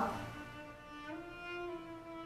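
Quiet orchestral string music: violins and cellos holding long notes that shift slowly in pitch.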